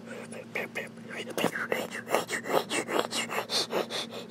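A person whispering: quick, irregular breathy strokes with no clear words, louder from about a second and a half in, over a faint steady low hum.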